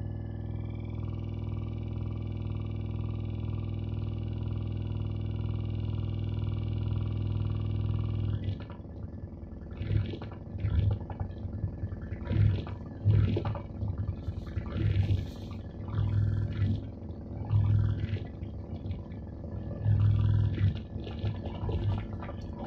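Live experimental electronic noise from a cable-patched electronic instrument setup: a sustained drone with many overtones and a slow pulse, which cuts off abruptly about eight seconds in and gives way to irregular crackling bursts and low thuds.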